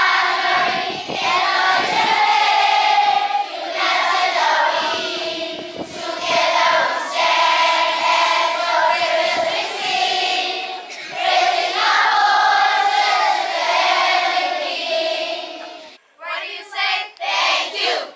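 A large group of schoolchildren singing their school song together as a choir. Near the end the singing breaks off suddenly and gives way to short, choppy sung phrases.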